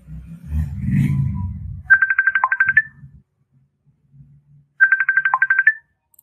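Incoming-call ringtone: a rapid, high-pitched warbling trill under a second long, each ending with a short dip in pitch, heard twice about three seconds apart. A low muffled rumble fills the first two seconds before it.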